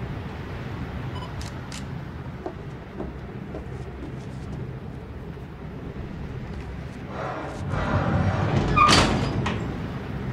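Freight train running with a steady low rumble; about seven seconds in, a boxcar's sliding door rolls along with a grinding scrape and bangs shut near the nine-second mark.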